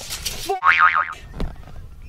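Steel tape measure blade flexing against a boulder: a sharp click, then a short wavering, springy boing, and another click about a second and a half in.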